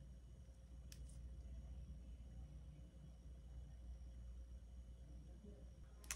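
Near silence: room tone with a steady low hum and one faint click about a second in.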